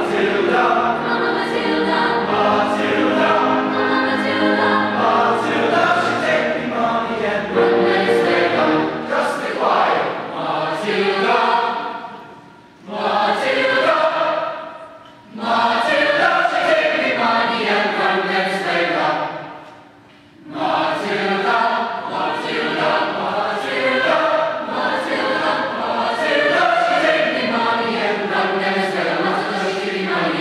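Mixed choir of women's and men's voices singing, in phrases broken by short pauses about 13, 15 and 20 seconds in.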